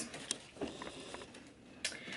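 Faint handling noises of makeup products being picked up: light rustles and a few small clicks, with a sharper click near the end.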